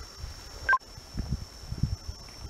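A short electronic beep of two tones sounding together, about two-thirds of a second in, over low uneven rumbling and a faint steady high-pitched whine.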